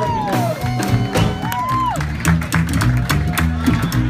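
Live blues band with a plucked upright double bass and drum kit playing a steady groove. A high held line bends in pitch over the first two seconds, then the bass notes and drum strokes carry the rest.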